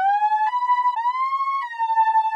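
ES2 software synthesizer lead patch of detuned pulse-wave oscillators playing a short line of four held high notes, each sliding into the next with portamento glide. The notes fade in quickly without a click, from a 10 ms attack.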